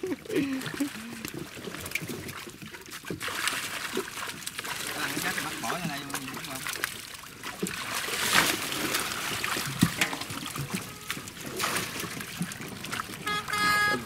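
Water splashing, sloshing and trickling as a long-handled dip net scoops fish out of a shallow netted enclosure crowded with thrashing fish, with water streaming back through the mesh. The loudest splash comes about eight seconds in, as a netful is lifted.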